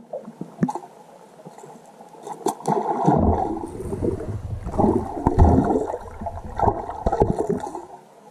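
Splashing and gurgling water heard from underwater as a bass strikes a Whopper Plopper topwater lure at the surface. It starts light, builds into heavy churning about three seconds in with several sharp splashes, and eases off just before the end.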